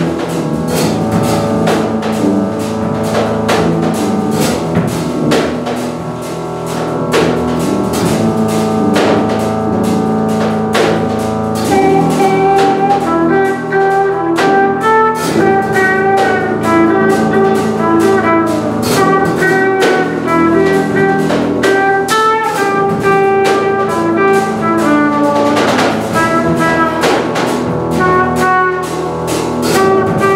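Live jazz played on drum kit, tuba and organ, the drums keeping up a busy beat under held low tones. About twelve seconds in, a trumpet enters with a melody.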